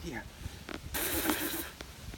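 A man hissing a sharp breath through his mouth for under a second, about a second in, in pain from the burn of a Carolina Reaper chili.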